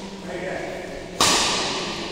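Badminton racket striking a shuttlecock: one sharp crack just over a second in, ringing on in the echo of a large hall.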